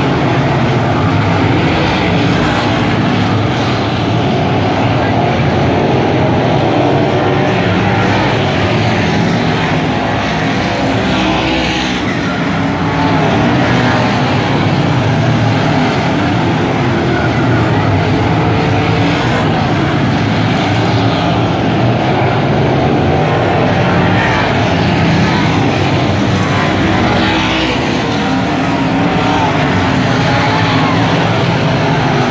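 A pack of dirt modified race cars running at racing speed on a dirt oval: a loud, continuous din of several engines that swells and eases as the cars pass and recede.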